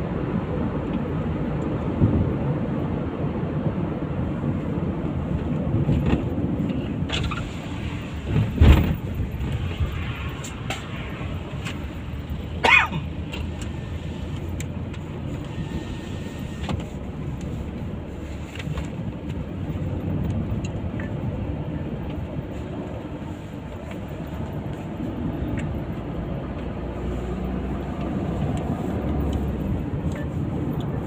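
Steady road and engine noise inside a moving Suzuki car's cabin. A few sharp knocks cut through it, the loudest about nine seconds in and another near thirteen seconds.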